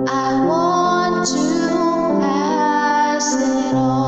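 A woman singing a slow Christian song, holding long notes that bend in pitch, over a soft instrumental backing track of sustained chords.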